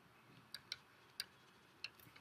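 Four faint, short clicks of a stylus pen tapping on a tablet's writing surface, over near silence.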